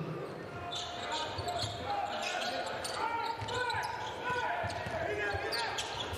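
Basketball arena sound: crowd voices and shouts in a large hall, with a basketball bouncing on the hardwood court.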